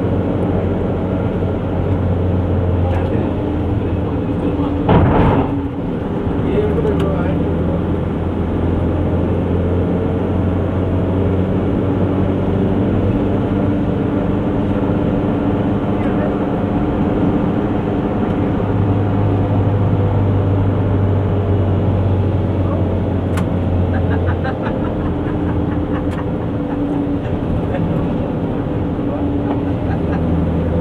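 Car engine and road noise heard from inside the moving car's cabin: a steady low drone whose pitch shifts slowly, with one brief loud thump about five seconds in.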